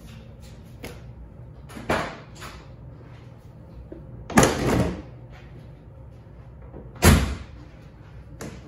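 Three sharp clunks, about two and a half seconds apart, the middle one the loudest with a short rattle after it.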